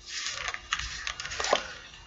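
Fingers twisting and prying at the stuck plastic cap of a small plastic medicine bottle: a continuous scratchy rubbing of plastic with a few sharp clicks.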